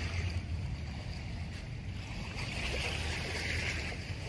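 Wind on the microphone with a steady low rumble, and small waves washing at the water's edge, their hiss swelling and fading slowly.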